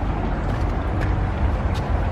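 Steady low rumbling outdoor background noise, strongest at the very low end, with a couple of faint clicks about a second in and near the end.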